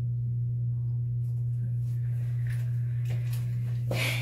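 Steady low electrical hum, one unchanging tone, with a few faint soft ticks from handling near the face.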